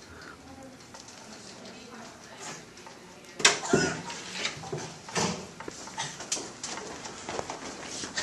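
Quiet room, then from about three and a half seconds in a sudden knock followed by an irregular run of bumps and clicks mixed with indistinct voices.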